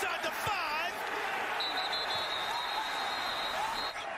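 Stadium field audio: a noisy crowd with voices, and a referee's whistle blown in one steady blast of about two seconds, starting a little before halfway, marking the tackle that ends the run.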